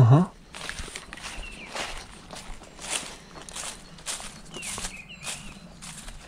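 Footsteps on overgrown ground strewn with leaves and debris, a step roughly every half second.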